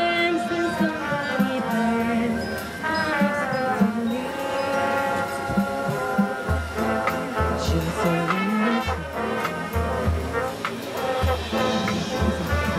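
High school marching band playing: brass holds and moves through sustained chords. About halfway through, a low, evenly pulsing beat joins in.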